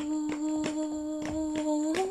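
A woman's voice holding one long note in a song, stepping up in pitch right at the end, with faint clicks behind it.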